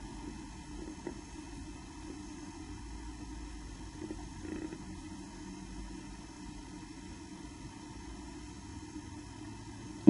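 Quiet, steady room noise: a low rumble with a faint hum and a few soft ticks.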